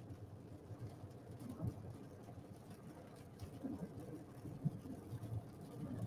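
Faint, low background noise from a storm chaser's live remote feed with a weak, dropping signal, broken by a few brief faint fragments of sound.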